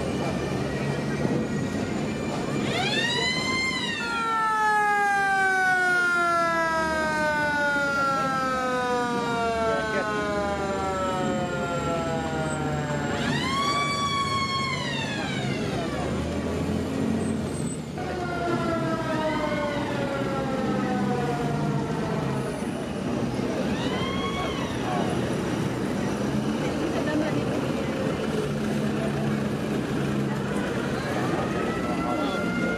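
A mechanical siren is spun up quickly, then left to wind down in a long falling wail of about nine seconds. It is wound up three more times, each wail shorter and fainter than the last. Under it runs the low rumble of slow-moving WWII jeep engines.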